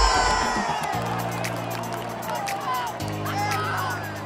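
Basketball arena crowd cheering and screaming, with a loud close-up scream at the start, over music with long held low notes.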